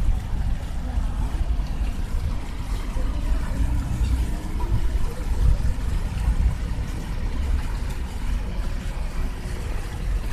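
Wind buffeting the microphone: an uneven low rumble throughout, with no calls from the resting ducks.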